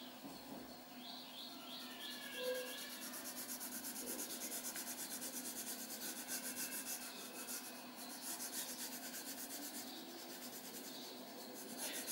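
Colour pencil shading on paper: quick, even back-and-forth strokes, several a second, faint and scratchy as the orange lead rubs over the paper to fill in a drawn shape.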